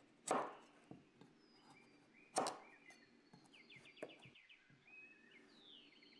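A chef's knife chopping through kabocha squash rind onto a cutting board: two sharp chops about two seconds apart, with lighter knocks of the blade in between.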